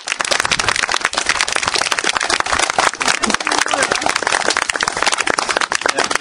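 A crowd applauding: many hands clapping at once, dense and steady throughout.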